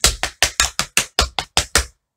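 Metal taps on tap shoes striking and brushing a wooden tap board in running shuffles (step, shuffle, step): an even run of about five or six sharp taps a second that stops shortly before the end.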